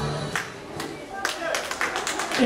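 Country dance music stops about a third of a second in, followed by scattered hand claps from the dancers that come quicker toward the end.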